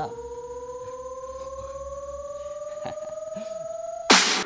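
Electronic suspense riser: a steady synthetic tone slowly gliding upward in pitch.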